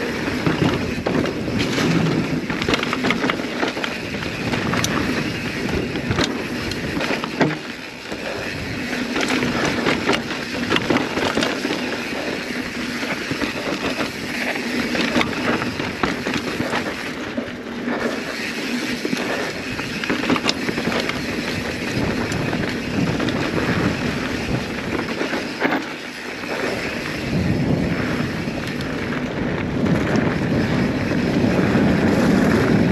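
Mountain bike descending a trail at speed: a steady rush of wind on the camera microphone and tyre noise on dirt and gravel, with frequent sharp clicks and rattles from the bike over the rough ground.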